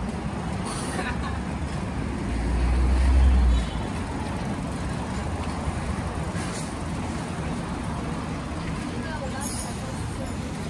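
Busy city street ambience: steady traffic noise, with a loud, deep rumble swelling about two seconds in and cutting off suddenly a little after three and a half seconds.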